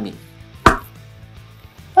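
A single sharp knock of a bare hand striking a wooden board, about two-thirds of a second in. The board does not break.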